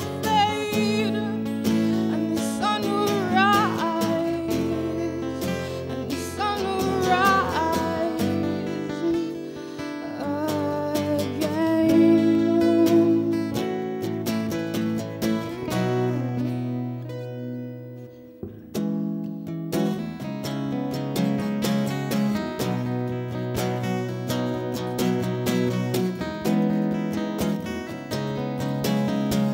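Two acoustic guitars playing a slow song together, strummed and picked, with a woman singing over them mostly in the first half; the playing dips briefly about two-thirds of the way through, then carries on.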